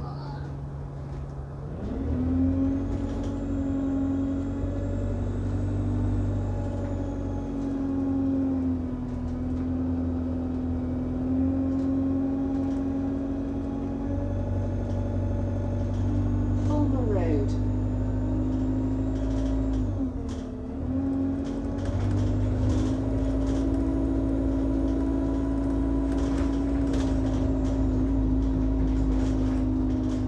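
Alexander Dennis Enviro200 Dart single-deck bus's diesel engine and drivetrain droning as heard inside the passenger saloon. The drone rises as the bus pulls away about two seconds in, then holds steady while it drives on. It dips briefly about twenty seconds in before picking up again.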